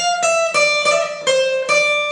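Cort cutaway acoustic guitar playing a single-note lick high on the neck: about six plucked notes, stepping down from the 13th to the 12th and 10th frets of the high E string, dipping to the 13th fret of the B string and settling on the 10th fret of the high E.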